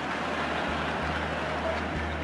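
Large audience applauding steadily, an even clatter of many hands, over a low hum.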